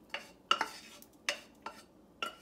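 A metal saucepan clinking and scraping as the last of a thick melted butter-and-syrup mixture is poured from it over a bowl of cereal snack mix: a handful of short sharp clinks, the loudest about half a second in.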